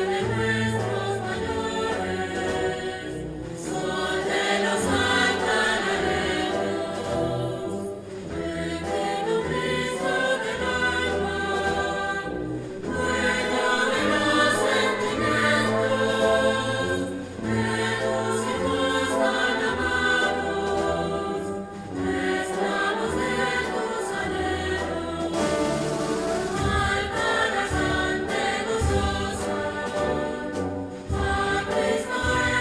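Concert wind band of clarinets, saxophones and brass playing a slow processional hymn-march in sustained full chords over a bass line, phrase by phrase with brief breaths between them.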